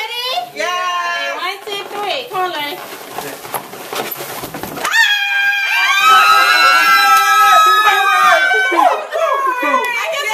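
A group of women shrieking and squealing with excitement, several long high-pitched screams overlapping from about five seconds in, after a few seconds of excited exclamations.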